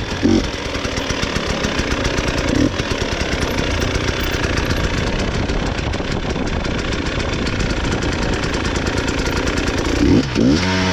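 Two-stroke enduro motorcycle engine running at low revs off the throttle with a rapid, uneven popping, and two brief throttle blips near the start.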